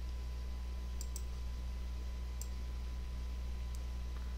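About four faint, sharp computer mouse clicks spread across a few seconds, over a steady low hum.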